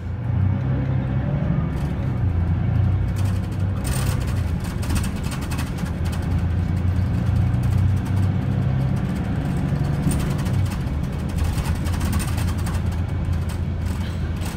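Mercedes-Benz Citaro O530 bus engine and drivetrain heard from inside the saloon as the bus drives along: a loud, steady low drone whose pitch rises and falls a few times as it pulls and eases off, over tyre and road noise.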